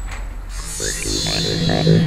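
Electronic synth tones: a quick run of short notes at varying pitches, starting about half a second in, over a steady low hum that swells near the end.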